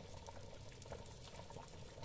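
Faint, scattered popping and bubbling of thick fava purée in a pot just taken off the heat, its boil dying down.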